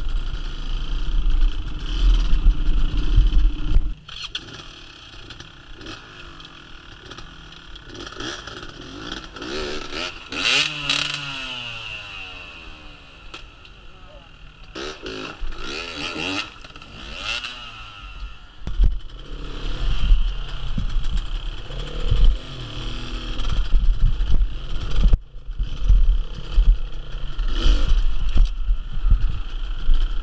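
Dirt bike engines revving in uneven bursts, rising and falling in pitch, as the bikes climb a rocky stream bed, with clatter and scraping from rocks and splashing. A loud close rumble for the first four seconds drops away suddenly, and a quieter stretch of revs from the bikes ahead follows. The heavy rumble comes back from about two-thirds of the way in.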